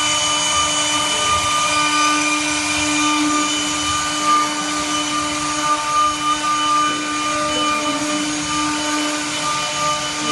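MT1530 double-spindle CNC router with its spindles running and its bits routing a wooden slab: a loud, steady whine of several held tones over the rasp of the cut.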